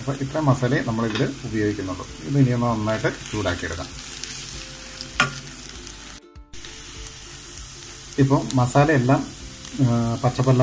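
Onion, tomato and spice masala frying in a stainless steel pan with a steady sizzle, stirred and scraped with a wooden spatula.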